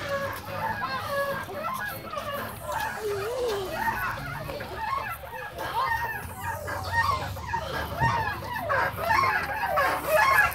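Playground background of overlapping children's voices: many short calls, squeals and shouts, none standing out above the rest.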